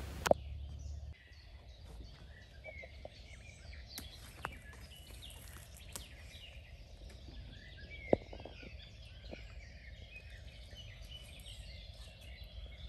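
A faint chorus of several small songbirds chirping and trilling at once, with a sharp click about eight seconds in.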